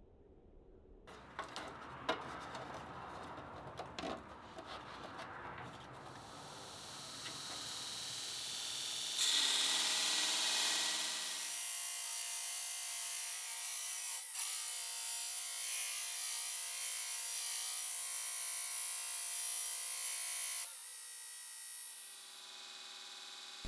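Grizzly 2x42 belt grinder grinding a steel wrench against its abrasive belt: a rough, hissing grind of metal on the belt. It starts faint with scattered clicks, swells to its loudest about nine seconds in, then holds steady.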